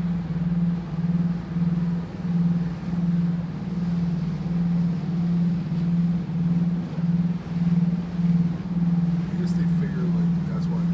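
Deep, steady machinery hum of a ship, throbbing in a regular beat about one and a half times a second, over a faint wash of background noise.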